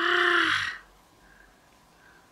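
A single loud, harsh call in the first second, rising a little in pitch as it starts, then quiet.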